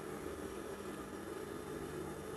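Steady low electric hum with a faint hiss from an industrial sewing machine's motor running without stitching.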